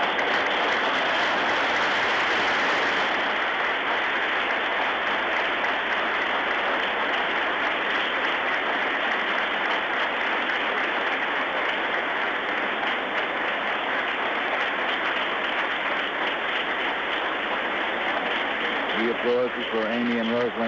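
Sustained applause from a large audience in a hall, steady throughout. A voice comes in near the end.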